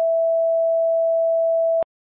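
Bars-and-tone test signal: a steady, pure mid-pitched beep held for nearly two seconds, then cut off abruptly.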